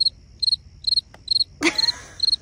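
Cricket chirping sound effect, evenly spaced high chirps about twice a second over a steady thin trill, the comic 'crickets' gag for an awkward silence. A brief louder noise cuts in near the end.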